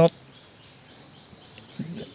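A pause in a man's speech filled by faint, steady outdoor background noise; his voice cuts off just after the start and a short vocal sound comes in near the end.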